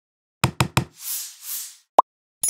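Sound effect of an animated logo intro. Three quick, sharp knocks come first, then two whooshes that swell and fade, then one short, loud hit as the logo lands.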